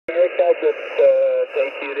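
A man's voice in a single-sideband (USB) shortwave amateur radio transmission on 20 metres, reproduced by an ICOM IC-R75 communications receiver: thin, narrow audio with no bass or treble, over a steady hiss of static.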